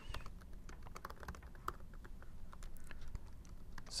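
Typing on a computer keyboard: an irregular run of light key clicks.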